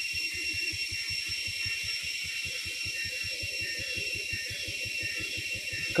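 Vehicle engine running at low, steady revs, a rapid even pulse, with a steady high-pitched whine above it.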